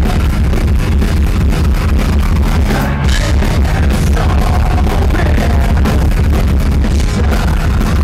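Rock band playing loud and live, with a male lead singer singing into a microphone over heavy bass and drums.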